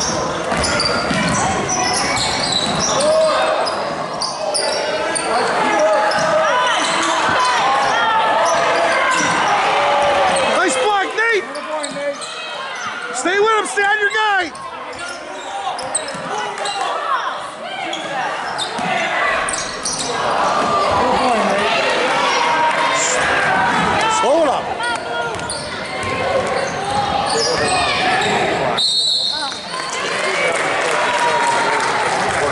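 Gym sound of a youth basketball game: a basketball dribbling and bouncing on the hardwood floor, sneakers squeaking, and players and spectators calling out, all echoing in the large hall. A run of short squeaks stands out a little before the middle.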